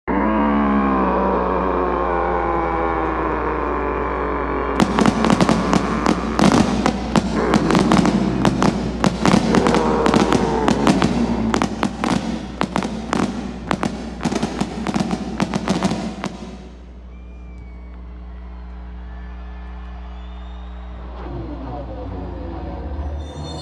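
Fireworks going off in rapid succession, a dense run of sharp bangs and crackles lasting about eleven seconds, over music. It opens with music on falling tones before the first bang and ends on quieter steady music tones once the fireworks stop.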